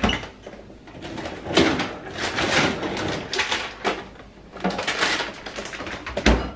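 A refrigerator door pulled open with a thump, then a plastic bag of shredded cheese rustling and crinkling in the hands for several seconds.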